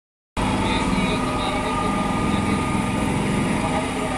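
A motor vehicle's engine idling steadily amid street noise, cutting in abruptly about a third of a second in.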